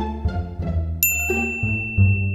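A bright, bell-like ding sound effect strikes about a second in and rings on steadily, over background music of plucked and bowed strings.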